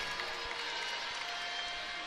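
Arena crowd applauding after a service ace, a steady even wash of crowd noise with a faint thread of music under it.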